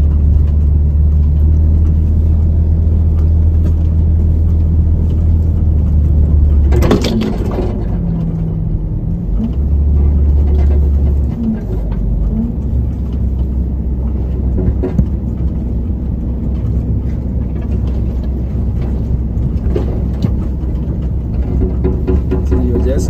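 Car driving on a sandy dirt track, heard from inside the cabin: a steady low rumble of engine and road. There is one sharp knock about seven seconds in.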